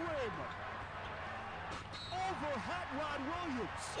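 Faint, low-level basketball game broadcast audio: a commentator's voice heard quietly, with a few short phrases in the second half.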